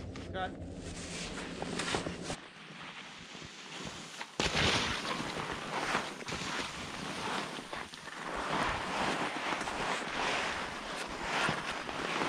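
Wind rushing over a helmet-camera microphone, growing louder and hissier after a sharp click about four seconds in.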